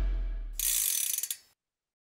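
The low tail of heavy rock intro music fades out. Then a short, bright ratcheting click sound effect runs for about a second and cuts off suddenly.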